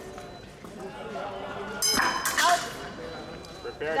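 Épée blades clinking in a bout, then about two seconds in the electric scoring machine's tone sounds suddenly for a double touch, joined by a shout.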